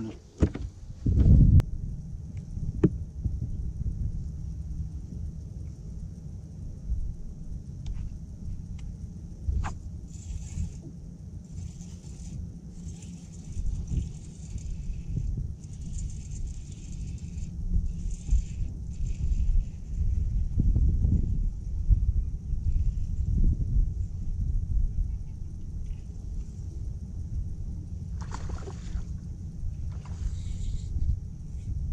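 Wind buffeting the microphone and water lapping against a boat's hull, a low uneven rumble throughout. There is a loud thump about a second and a half in and a few sharp knocks later.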